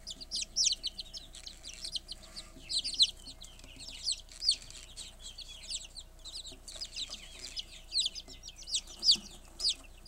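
A brood of buff Silkie chicks peeping, many short high-pitched peeps overlapping in a steady chorus.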